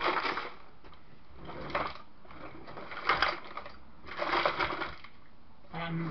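Small hard objects rattling and clattering as someone rummages through a kitchen drawer or box of adapters, in four short bursts about a second apart.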